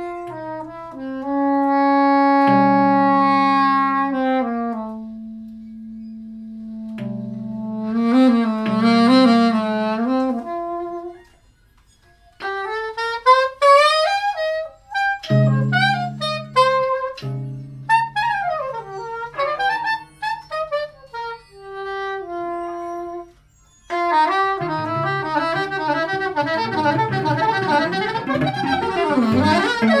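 Live improvised music from a small ensemble: a soprano saxophone plays long held notes and gliding melodic runs over steady low tones from a tapped string instrument and laptop electronics. The music breaks off briefly twice. From about 24 seconds in it becomes a dense, busy texture.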